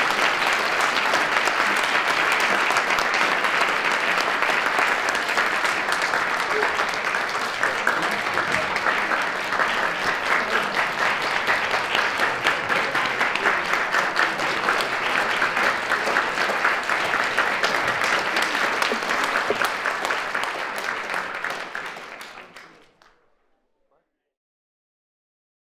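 Audience applauding, a sustained crowd of many hands clapping that holds steady and then fades out near the end.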